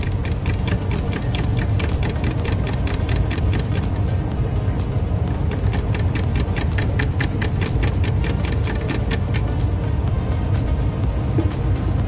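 A wooden stirring stick mixing 2K paint in a metal tin, tapping the side of the tin in a fast, even run of light ticks, several a second, over a steady low hum.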